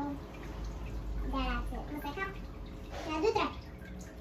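Child's voice speaking in a few short phrases over a steady background hiss.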